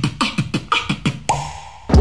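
Beatboxing into a close microphone: a fast run of sharp mouth-percussion hits, kick-like with falling low thumps, then a brief steady high tone near the end.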